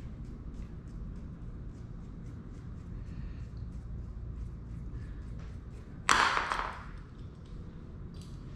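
Small metal bicycle fittings being handled and fitted, giving faint light clicks over a steady low hum. About six seconds in comes a louder, brief rattling rustle.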